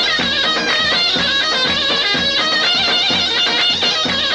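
Turkish folk dance music: a high, wavering reed melody over a steady drum beat about twice a second.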